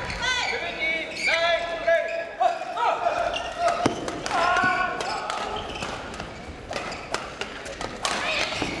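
Players' court shoes squeak and thud on the badminton court floor, with scattered sharp taps.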